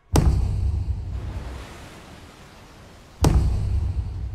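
Two deep cinematic impact hits about three seconds apart, each a sharp strike followed by a low rumbling tail that slowly dies away.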